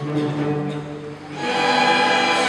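A school string orchestra playing: quieter sustained low notes, then the full ensemble comes in louder about one and a half seconds in.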